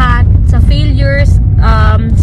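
Steady low rumble of a moving car, heard from inside the cabin, under a woman talking.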